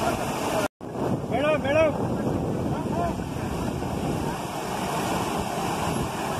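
Water gushing out of a row of large outlet pipes into a canal: a steady rush of falling, churning water. It cuts out abruptly for a moment about 0.7 s in, and a few voices call out over it soon after.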